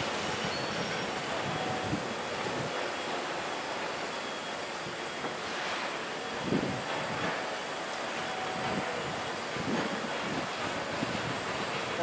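Steady background hum and hiss, with a few faint soft knocks of a kitchen knife slicing through boiled pork onto a wooden cutting board, the clearest about six and a half seconds in.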